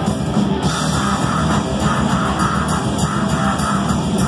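Thrash metal band playing live: distorted electric guitars, bass and a drum kit, loud and dense without a break.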